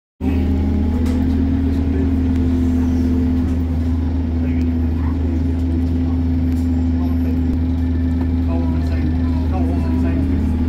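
Steady drone of an Alexander Dennis Enviro200 MMC single-deck bus heard from inside the saloon, a constant low hum holding one pitch throughout.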